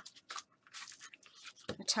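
Faint rustling and a few light clicks of a paper card being handled and opened, with speech starting near the end.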